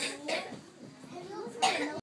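Children's voices with two short coughs, one about a third of a second in and one near the end.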